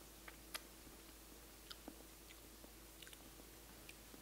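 Near silence with a few faint, scattered mouth and lip clicks from someone tasting a horseradish whipped-cream sauce off a finger, over a faint steady room hum.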